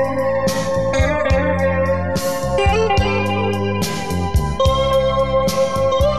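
Instrumental Chilean cumbia music: a sustained melody line over bass and percussion keeping a steady beat, with no singing.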